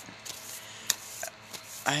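A deck of oracle cards being shuffled by hand: soft rubbing of the cards with a few sharp clicks, the sharpest a little before halfway.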